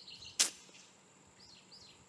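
Faint, brief bird chirps over quiet outdoor ambience, with one short hiss a little under half a second in.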